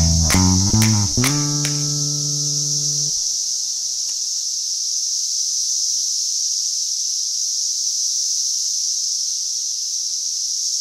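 Electric bass guitar playing a few plucked notes with a slide, ending on a held note that stops about three seconds in and dies away. Under it and then alone, a steady high-pitched drone from a chorus of Brood X periodical cicadas.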